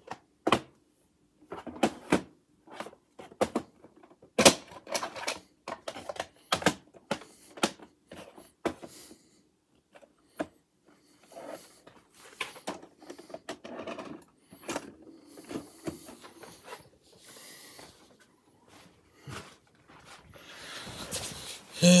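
Plastic VHS cassette case handled and opened, and the tape cassette taken out: a run of irregular plastic clicks, taps and rattles.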